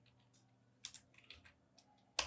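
A few faint keystrokes on a computer keyboard, about five short clicks in the second half, against near silence.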